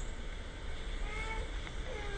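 A pause in the talk: a steady low hum and hiss from the recording, with a faint, brief, high-pitched wavering sound about a second in.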